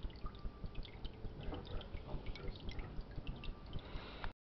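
Water dripping and trickling in an aquarium: a steady run of small, irregular drips and plinks over a low rumble.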